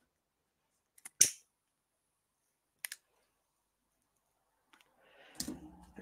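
Near silence broken by a few sharp, isolated clicks: a single one about a second in and a fainter double click near three seconds. Just before speech resumes comes a short, low breathy vocal sound.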